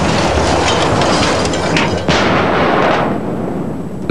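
Battle noise: shell blasts and gunfire, one loud dense rush that surges again suddenly about two seconds in and dies away near the end.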